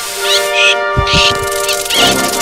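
Background music of sustained instrumental tones, with three short, high-pitched cartoon sound effects or character squeaks and a low thud about halfway through.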